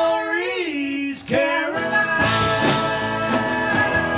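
Live Americana-rock band playing: electric guitars, bass and drums with vocals and tambourine. A sung phrase bends in pitch, the sound drops out briefly just after a second in, then a long note is held over the band.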